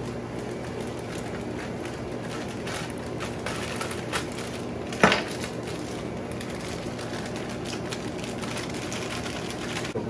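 Steady fan hum with sizzling from a hot skillet of browned ground beef and sausage, broken by a few light clicks and one sharper knock about five seconds in.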